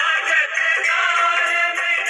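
Hindu devotional aarti song: a singing voice over instrumental accompaniment, continuous melody with no pause.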